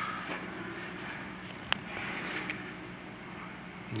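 Handling noise from a plastic wiring connector and its sleeve being turned in the fingers: a single sharp click a little under two seconds in, with a couple of fainter ticks, over a steady low background hum.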